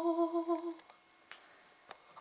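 A woman's classical singing voice holding one long note with a steady vibrato, the closing note of the aria, which cuts off just under a second in. A few faint clicks follow in the quiet.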